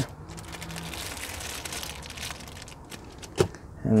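Faint rustling of a plastic accessory bag and cardboard box being handled, with a single sharp tap about three and a half seconds in.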